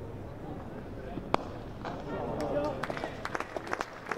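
A cricket bat striking the ball once, a single sharp crack about a second and a half in, as the batter plays a cover drive. Scattered light applause and faint voices from a sparse crowd follow.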